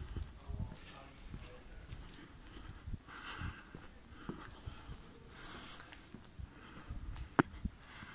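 A person's breathing, heard as soft puffs of breath every couple of seconds, with low thumps of footsteps and handling while walking uphill. One sharp click near the end is the loudest sound.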